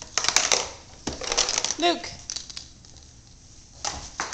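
Clusters of short plastic clicks and rattles as a toddler handles and pushes a plastic ride-on toy across a hardwood floor. A woman calls 'Luke!' once, about two seconds in.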